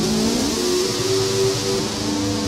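Electric guitar played through a distortion pedal, holding sustained notes. About a quarter-second in, a note slides or bends upward to a higher pitch, which then rings on, over a steady hiss.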